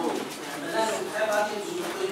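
Low, indistinct speech in a meeting room, with no clear words.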